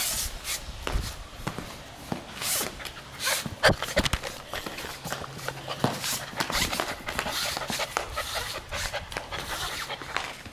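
Quick irregular taps and scuffs of a German Shepherd puppy's paws and claws on a tiled floor as it runs about with a tennis ball, with one sharper knock about three and a half seconds in.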